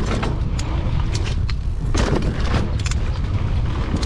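Wind buffeting the action camera's microphone as a full-suspension mountain bike rolls down a dirt trail, a steady low rumble. Irregular sharp clicks and knocks run through it as the bike rattles over the ground.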